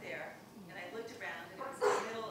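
A woman talking, with a sudden louder sound just before the end.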